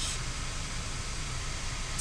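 Steady, even hiss inside the cabin of a 2014 Ford Focus SE with its engine running.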